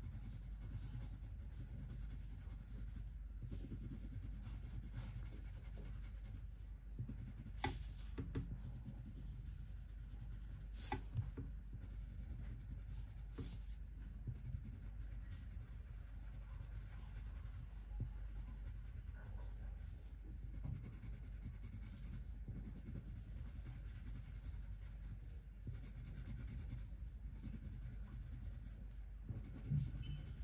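Leo&Leo Carbon Line wax-core colored pencil faintly scratching over paper as it colours, with three short sharp clicks in the first half.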